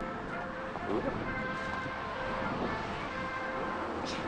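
Steady outdoor ambience: a low rumble of wind on the microphone and distant road traffic, with faint voices far off.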